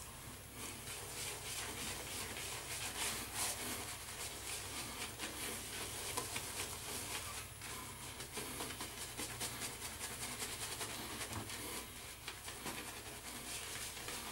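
Large Frank Shave shaving brush scrubbing lather over a week's stubble on the face: a soft, continuous bristly rubbing with a fine crackle from the lather.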